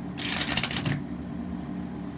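A deck of tarot cards being shuffled by hand: a quick flurry of card edges slapping together for under a second, then quieter handling, over a steady low hum.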